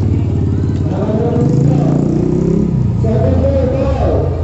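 A motor engine running close by, its low pitch rising and then falling back around the middle, with people's voices over it.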